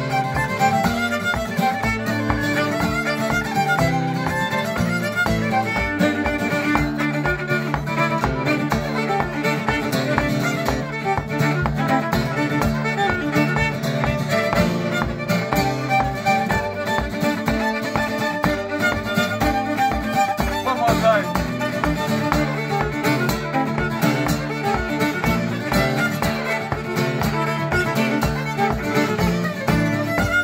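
Fiddle and steel-string acoustic guitar playing an Irish reel together. The fiddle carries a fast bowed melody over steady strummed guitar chords.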